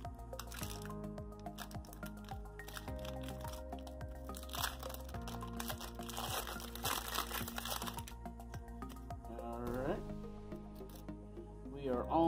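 Background music playing under the crinkling and tearing of a baseball card pack wrapper as it is opened. The wrapper noise is thickest in the middle of the stretch.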